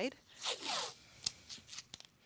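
Painter's masking tape pulled off its roll with a brief rasping rip about half a second in, followed by a couple of light clicks.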